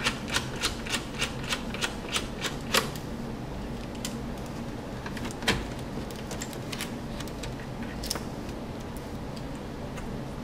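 Small precision screwdriver turning out a laptop motherboard screw: a quick run of light clicks, about three a second, for the first few seconds. Then a few scattered knocks as the plastic-cased board is handled.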